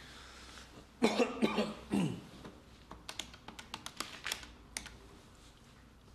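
A man's two short vocal noises, a cough-like sound and then a falling grunt. These are followed by a run of about a dozen light, irregular clicks of buttons being pressed, as when dialling a phone.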